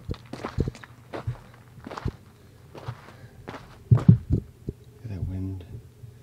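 Footsteps on sand and volcanic gravel, a few irregular steps, with a louder thump about four seconds in.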